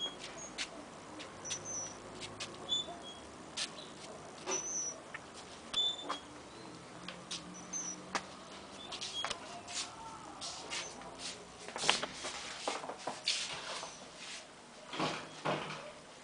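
Small birds chirping now and then, short high calls scattered throughout, over soft footsteps and scattered clicks and rustles of handling, busier in the last few seconds.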